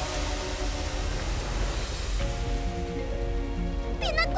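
Cartoon sound effect of sand pouring into a sinkhole: a steady hiss with a deep rumble underneath. Background music plays over it and comes forward from about halfway through.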